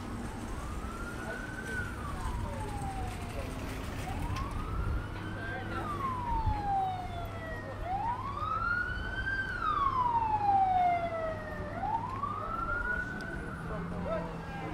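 Emergency vehicle siren wailing in a slow rise and fall, each sweep about four seconds long, loudest around the third sweep, over city street traffic noise.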